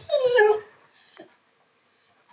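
A husky's short vocal "talking" reply, a half-second moaning call that slides down in pitch, right at the start.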